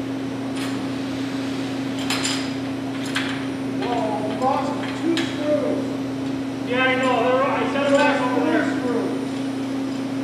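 A few sharp metallic clicks and knocks, from aluminum extrusion framing being handled and fitted, over a steady low hum.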